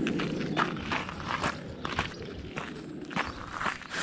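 Footsteps on a gravel path, short crunching strikes at an uneven pace of about two or three a second.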